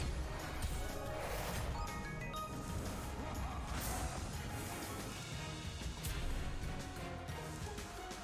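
Online video slot game's background music with its reel sound effects: symbols dropping and tumbling, with a few sharp hits as winning clusters burst and the reels land.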